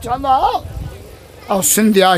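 A man preaching loudly in Sindhi through a public-address microphone, with a short pause about half a second in, during which only a low rumble is heard before he speaks again.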